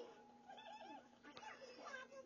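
A small animal making a quick string of short, squeaky calls that glide up and down in pitch.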